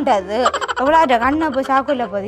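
A person's voice with a strongly wavering, sliding pitch and no clear words, running without a break.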